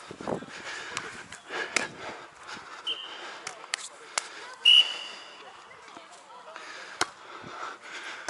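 Referee's whistle: a short toot about three seconds in, then a longer, louder blast just before five seconds, the signal for the server to serve. A sharp slap of a hand hitting the volleyball comes about seven seconds in.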